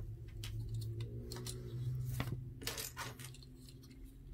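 Irregular small, hard clicks and taps of plastic model-kit parts being handled: the jointed limbs of a plastic mech model and a gun part clicking against each other as they are fitted and posed by hand.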